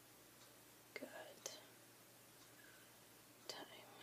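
Near silence, broken twice by faint breathy mouth sounds from a woman, like a soft whisper or breath: about a second in and again near the end.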